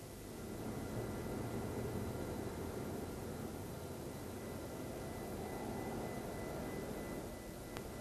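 Jet aircraft in flight, a steady rushing drone that swells in over the first second and holds.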